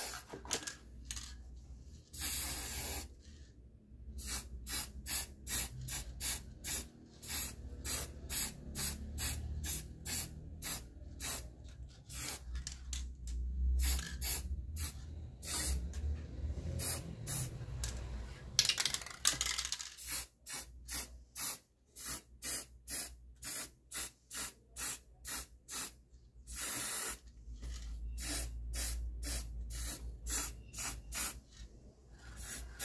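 Aerosol spray paint can hissing in many short bursts, about two or three a second, with a few longer sprays held for a second or so, as gold paint is sprayed onto trays.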